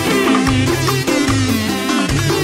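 Nubian dance music played by a band with electronic keyboard, a bass line repeating about every half second, and percussion, with no singing at this moment.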